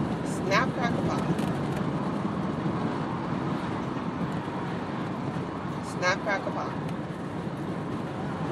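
Steady road noise of a moving car, heard from inside the cabin. A short vocal sound comes about half a second in and another about six seconds in.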